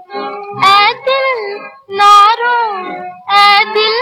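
Old Hindi film song: a woman's high voice sings three wavering, drawn-out phrases over orchestral accompaniment.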